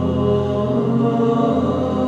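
Choir voices holding slow, sustained chords without words, moving to a new chord every second or so.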